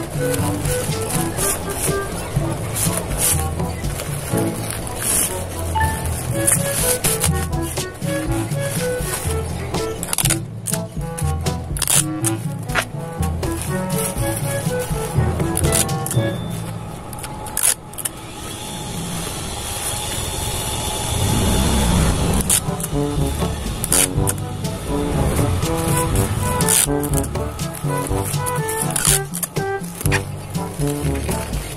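Background music with short melodic notes over a repeating bass line, with crackling clicks from clear plastic wrap and a plastic bag being handled, and a longer rustle a little past the middle.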